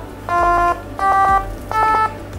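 Short electronic notes from a small Grove speaker, sounded by touching lychees wired to a Seeeduino XIAO's QTouch capacitive-touch pins: each touch changes the capacitance and plays a tone. Three brief notes of different pitch, about two-thirds of a second apart.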